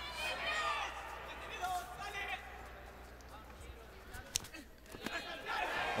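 Kickboxing ring ambience: voices shouting from ringside in the first couple of seconds, then quieter arena noise. There is one sharp smack of a strike landing about four and a half seconds in.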